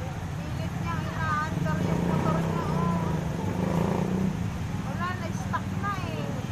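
Street traffic: motorcycle and vehicle engines running, the hum swelling in the middle as one passes close, with people talking in the background.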